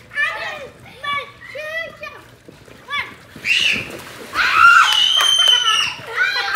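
Girls shouting and talking in a pool, with a splash about midway as one falls off an inflatable float into the water. One long high scream near the end.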